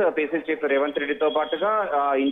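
Speech only: a voice talking without a break, sounding thin, with no treble above about 4 kHz, as over a phone or radio line.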